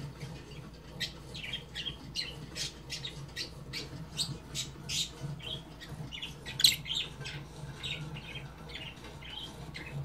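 Small pet parrot chirping: a rapid run of short, high chirps, several a second, with one louder call about two-thirds of the way through, over a steady low hum.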